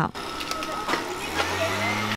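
Background sound of people working: faint chatter and small knocks of things being handled. A low steady hum comes in about a second and a half in.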